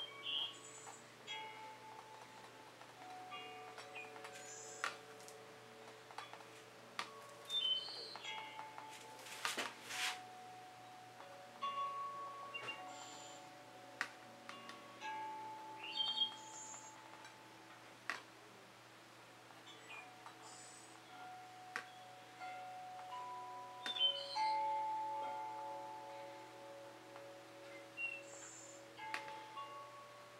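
Faint chime-like ringing: notes at several different pitches, each struck and left to ring for a few seconds, overlapping one another, with a few soft clicks and taps among them.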